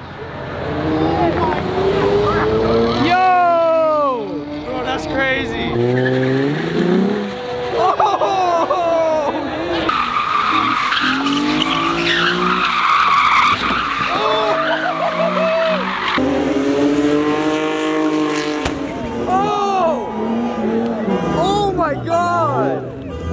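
Car engine revved hard again and again in rising and falling sweeps while its tyres screech, a car doing donuts and burnouts. The tyre screech is strongest and most steady through the middle stretch.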